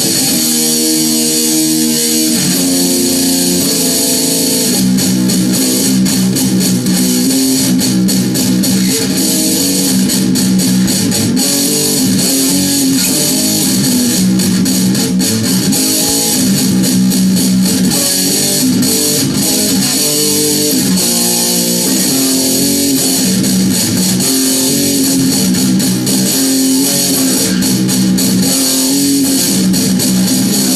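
Stratocaster electric guitar played through a death metal distortion pedal, its low E string tuned down to B, riffing continuously with heavy distortion.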